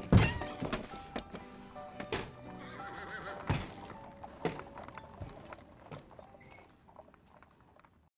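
Film soundtrack music with horse sound effects: a horse whinnying and hooves clip-clopping over the music, which dies away near the end.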